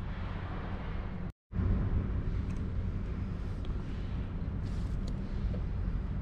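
Steady low outdoor rumble with a few faint clicks and taps, dropping out completely for a moment about a second and a half in.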